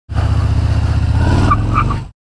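Motorcycle engine running at low speed, a steady low pulsing rumble, fading out at the very end.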